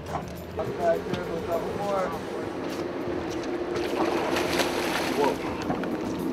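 Steady hum of a sportfishing boat's engine, with a hooked yellowtail splashing at the hull as it is gaffed, the splashing strongest about four to five seconds in.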